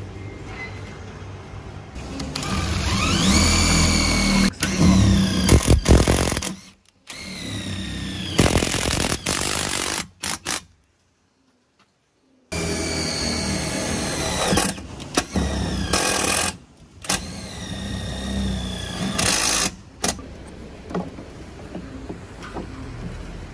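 Electric power tool running in several bursts, its whine rising as the motor speeds up and falling as it winds down. The sound breaks off completely for about a second and a half around the middle.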